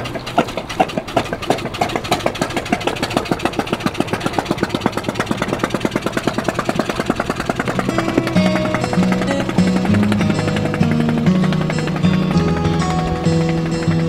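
The small inboard engine of a wooden Dispro (disappearing-propeller) launch running with a fast, even putt-putt beat as the boat pulls away from the dock, fading after about eight seconds. Background music plays throughout, its held notes coming forward in the second half.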